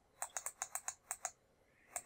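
Quick run of about eight sharp clicks in just over a second, then a pause and two more near the end: computer input clicks pressing the right-arrow key of an emulated TI-84 calculator, each stepping the graph's trace cursor along.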